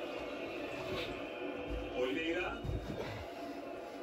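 Faint sound of a televised football match playing in the room: a commentator's voice over stadium crowd noise. A man laughs briefly about a second in, and there are a couple of low thuds in the middle.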